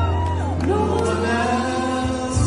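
Two men singing a duet into microphones over a held low accompaniment note, their voices sliding between notes in sustained runs.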